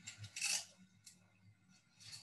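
A brief rustling scrape about half a second in, then a faint click, over a low steady electrical hum.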